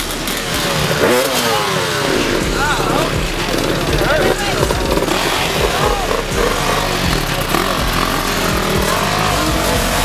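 Dirt bike engines running and revving, their pitch rising and falling again and again, among the voices of a crowd.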